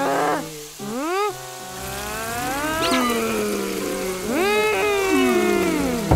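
Wordless cartoon character vocalizations: whiny cries that swoop up and slide down in pitch several times, over a quiet background music bed of held low notes.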